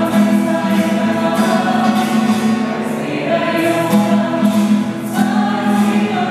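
Small group of women singing a slow, sustained Slovenian song in unison, with a strummed acoustic guitar.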